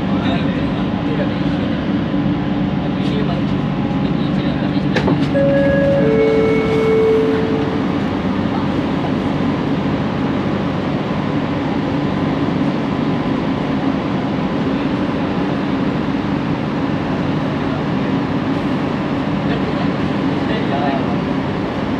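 Bombardier Innovia ART 200 metro train's linear-motor drive humming steadily as it slows into a station, the hum dying away about six seconds in as the train stops. A click and a two-note falling chime, the door-opening chime, come about five seconds in. Steady station and cabin noise follows.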